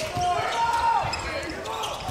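Basketball being dribbled on a hardwood arena court, with crowd chatter and shouts in the hall.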